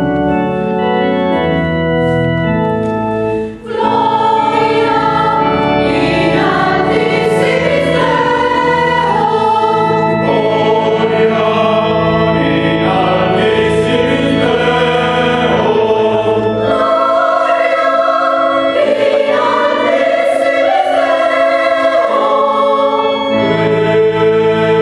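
Church organ playing sustained chords for a few seconds, then a mixed choir comes in and sings with the organ accompaniment.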